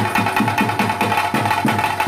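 Chenda drums beating a steady rhythm of theyyam accompaniment, about four low strikes a second, with a steady ringing tone above the drums.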